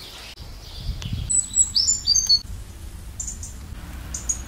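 Small birds chirping: a quick run of sharp, high whistled notes starting just over a second in, then fainter chirps, over a low rumble.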